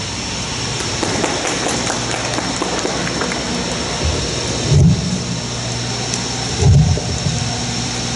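A crowd clapping, a dense crackling patter after a speech ends. Two low microphone-handling thumps come about five and seven seconds in, as the handheld mic is moved.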